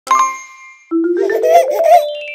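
An intro jingle: a single bright bell-like ding that rings out and fades, then a quick rising run of musical notes with bending, cartoonish pitches.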